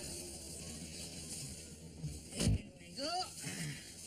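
A car door shutting with one heavy thump about two and a half seconds in, as a man gets into the driver's seat, followed by a short vocal sound from him.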